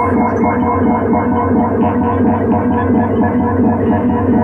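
Moog Matriarch analog synthesizer playing a dense, sustained drone of several stacked tones, throbbing with a fast, even pulse.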